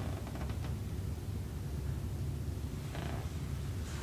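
Steady low room rumble, with faint rustling of hands on a cotton shirt as a chiropractor feels along the shoulder and upper back: no joint crack is heard.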